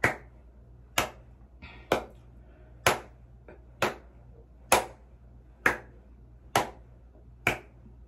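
A person keeping a slow, steady beat with their hands: sharp snaps about once a second, around nine in all.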